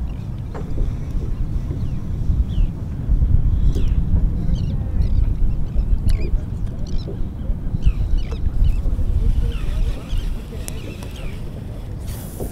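Low, steady rumble of wind on the microphone, heavier through the middle. Over it come short, high bird calls, scattered, with a cluster in the middle and another near the end.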